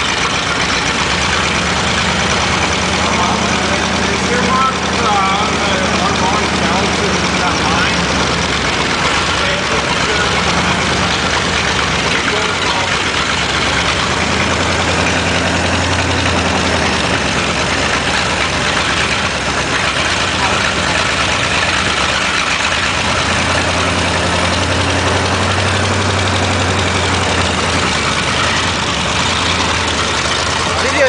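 Ford 302 small-block V8, bored .030" over, running with an open, really loud exhaust, its speed rising and falling a few times as the throttle is worked at the carburetor. A knock from the #1 connecting rod, which runs without its bearing, is heard a little through the exhaust.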